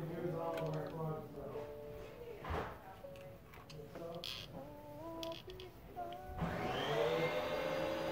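Melodic notes stepping from pitch to pitch, then about six and a half seconds in an electric appliance motor switches on, spinning up into a steady whirring rush with a constant hum.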